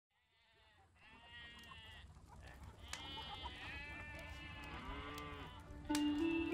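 Sheep bleating several times, fading in from silence over the first second; each bleat rises and then falls in pitch.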